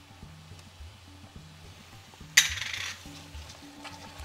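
A single brief metallic clink and rattle of kitchenware against an aluminium frying pan about two and a half seconds in, dying away within about half a second.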